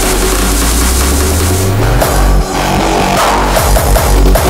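Hardstyle electronic dance music from a DJ mix: a deep bass sweep rises in pitch for about two seconds, drops out into a short break, and the pounding kick drum comes back in near the end.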